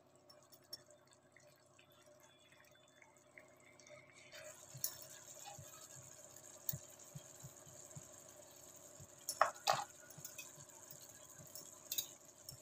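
Thick paneer gravy simmering in a pan on a gas burner: scattered small pops and bubbles over a steady hiss that comes in about four seconds in, with two louder clicks close together just before ten seconds in.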